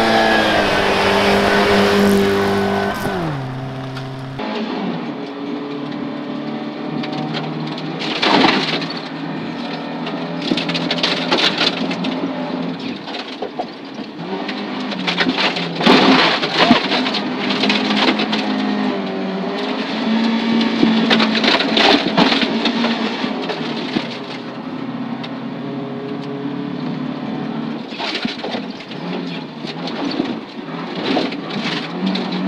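Volvo 240 rally car at full speed on a gravel stage. First it comes past, its engine note dropping sharply about three seconds in. Then it is heard from inside the cabin: the engine runs hard at a steady pitch while loose gravel rattles and crackles against the car's underside.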